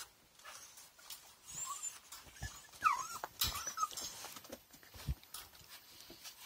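Dogs in a pen whining: a few short, high squeaky whines that bend up and down around the middle, among scattered clicks and rustles.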